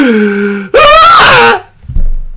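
Loud crying wails from a person: a drawn-out falling moan, then a higher, wavering sobbing wail that stops about a second and a half in.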